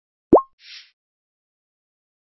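Interface sound effect of a slide element being clicked: a short synthesized pop that glides quickly upward, about a third of a second in, followed by a brief, quieter hiss as new content appears.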